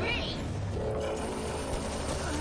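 Cartoon magic-beam sound effect: a steady, rapidly pulsing buzz that starts well under a second in.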